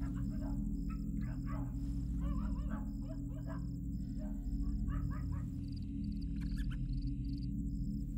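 Night ambience: a high chirp repeating evenly about twice a second, with scattered animal calls, over a low, steady music drone.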